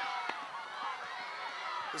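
Crowd of football spectators chattering and calling out, many overlapping voices at a moderate level, with a few faint knocks.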